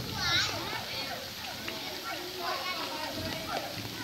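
Steady hiss of rain falling on a flooded street, with faint voices in the background and a brief high-pitched voice near the start.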